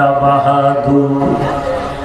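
A man's voice chanting in long, held notes, the sung intonation of a Bengali waz sermon; the pitch steps down between notes and the voice fades a little near the end.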